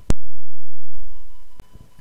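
A single very loud, sharp click, followed about one and a half seconds later by a much fainter click.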